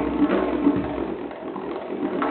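Tonbak (Persian goblet drum) played solo in a fast, dense roll of finger strokes over the drum's sustained ringing pitch. It turns softer about two-thirds of the way through and picks up again at the end.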